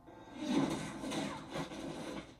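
Soundtrack of a TV action fight scene playing: score and fight sound effects, swelling about half a second in and then fading.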